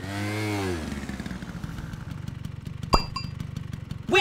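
A motor running steadily with a rapid low pulsing, with a pitched sound that rises and falls in the first second and a single sharp click about three seconds in.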